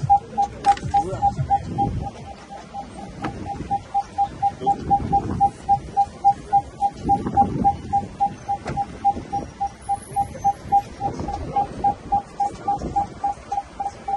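A car's door-open warning chime beeping steadily at one pitch, about three beeps a second, sounding because a door stands open.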